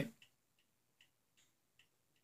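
Faint, regular ticking, about two to three ticks a second, in an otherwise quiet room.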